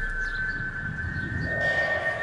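The sustained high drone of a background music cue fading away, over a low rumbling noise that swells near the end.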